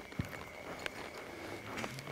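A horse's hooves stepping in deep, soft arena dirt as it walks and turns: quiet, with a few faint thuds and clicks.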